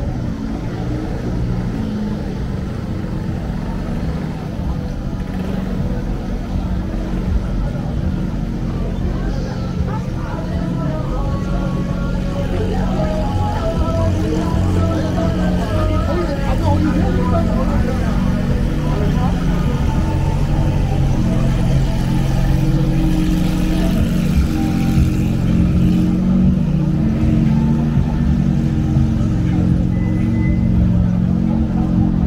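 Busy city street ambience: car engines running close by under the chatter of passers-by, with some music in the mix. It grows gradually louder toward the end.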